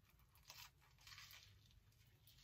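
Faint crunching of a person biting into and chewing a crisp, buttered, fried-bread sandwich: a short crunch about half a second in, then a longer run of crunches around a second in.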